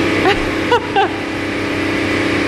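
A steady motor hum with an even pitch, under a few short laughs or vocal sounds in the first second.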